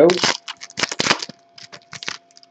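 Foil wrapper of a trading-card pack being torn open and crinkled: a quick run of crackly rustles through the first second or so, then a few lighter rustles as the cards come out.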